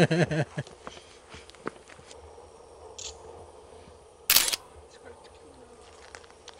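Laughter trailing off at the start, then a quiet stretch of faint scattered ticks, and one short, sharp, loud noise about four seconds in.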